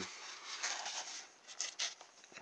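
Soft rubbing and rustling of hands handling a polystyrene foam model boat hull, with two faint clicks near the end.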